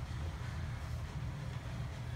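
Steady low rumble of background noise in a room, with no distinct sounds standing out.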